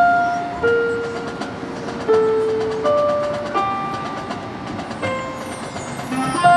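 Marching band front ensemble playing a slow, sparse melody: single held notes, each starting sharply and fading, about one a second.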